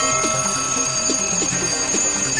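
Alarm clock ringing: a loud, steady high-pitched ring that cuts in suddenly where the ticking had been, with music underneath.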